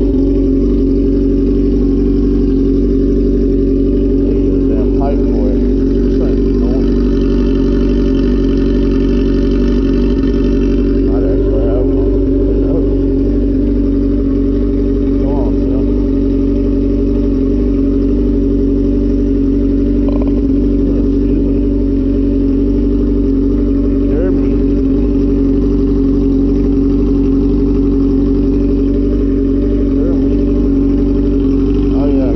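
Stunt motorcycle engine idling steadily while it warms up in the cold, with no revving. A few faint, short, higher sounds come over it.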